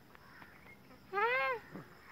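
A single drawn-out animal call, rising then falling in pitch, about half a second long and heard a little past the middle.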